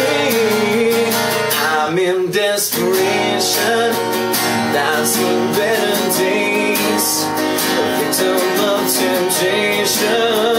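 Music: a steel-string acoustic guitar strummed in a steady rhythm, with a man singing a held, wavering melody over it.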